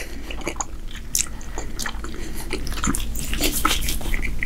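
Close-up chewing of a mouthful of tagliatelle in meat sauce, with many small irregular wet clicks and smacks of the mouth.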